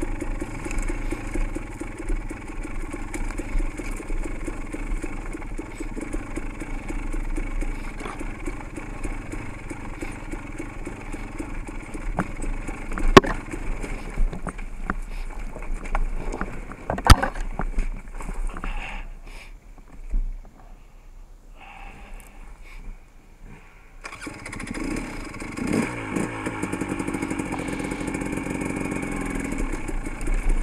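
Dirt bike engine running at low speed on a steep, rocky downhill, with two sharp knocks a few seconds apart past the middle. The engine sound then falls away for about five seconds before picking back up.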